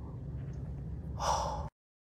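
Low steady rumble heard from inside a vehicle cabin, with a person letting out a short, sharp sigh a little over a second in. The sound then cuts off abruptly.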